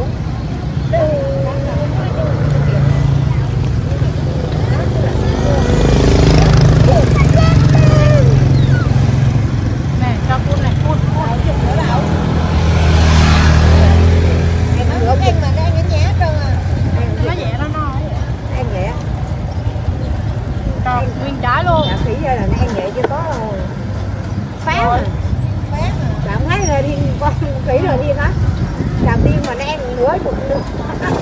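Busy street-market ambience: motor scooter engines rumbling past, swelling twice (around six to eight seconds in and again around thirteen seconds in), under scattered voices.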